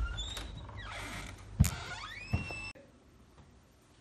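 A metal lever door handle and latch clicking as a door is opened, with the hinges creaking in a rising squeal; the sound cuts off abruptly near three seconds in.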